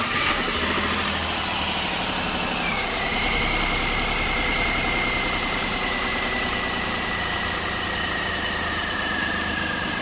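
Renault Kwid's three-cylinder petrol engine, freshly overhauled, idling steadily on its first run after the rebuild. A thin high whine sets in about three seconds in and sinks slowly in pitch.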